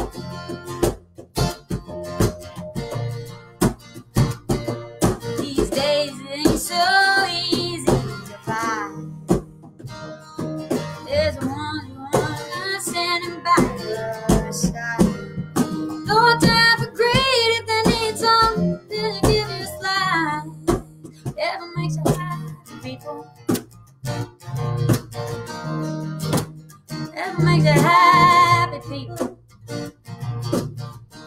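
Live acoustic performance: steadily strummed and picked acoustic guitar with electric bass guitar underneath, and a woman singing in several held phrases with wavering pitch.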